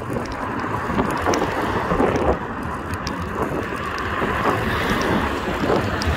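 Steady road traffic noise from passing cars, mixed with wind on the phone's microphone.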